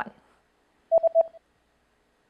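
Three quick electronic beeps at one pitch, about a second in: a sound-effect cue that marks the pause for the learner to answer.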